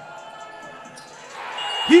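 Low gym ambience while a free throw is taken. About a second and a half in, a swell of shouting from the benches rises as the shot drops in.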